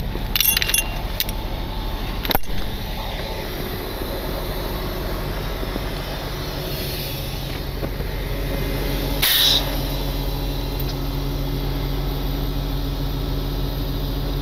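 Heavy diesel truck engine idling steadily, with tow-chain links clinking a few times at the start and a sharp knock a couple of seconds in; a short hiss about nine seconds in.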